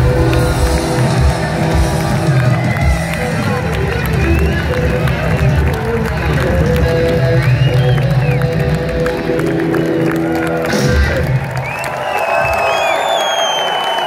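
Live rock band of electric guitar, keyboards and drums holding a final sustained chord, which ends about eleven seconds in. A crowd cheers and whistles over it, and the cheering and whistling carry on alone after the music stops.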